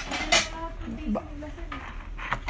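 Stacked white ceramic bowls clinking against one another as the stack is tilted and shifted by hand. There are several light clinks, the sharpest about a third of a second in.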